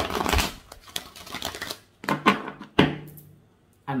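A deck of oracle cards being shuffled by hand: a rapid flutter of cards in the first second that trails off, then two sharp slaps of the deck.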